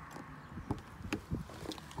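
Footsteps on gravel: a few short, uneven crunching steps.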